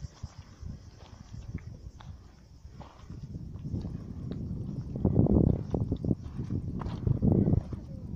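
Footsteps on a roadside, heard as scattered light clicks, with loud low rumbling bursts on the microphone about halfway through and again near the end.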